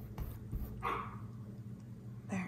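A dog barks once, a short sharp bark about a second in, falling in pitch.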